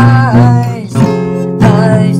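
Music: strummed acoustic guitar chords, with a melody line that slides down in pitch near the start.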